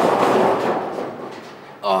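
A gutter ball reaching the back of a bowling lane and dropping into the pit: a sudden crash and rattle that dies away over about a second and a half.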